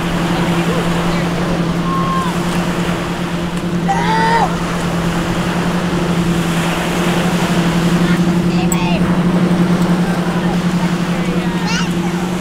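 Beach ambience: small waves washing on the shore and wind, under a steady low motor hum. Brief snatches of people's voices come about four seconds in, near nine seconds and near the end.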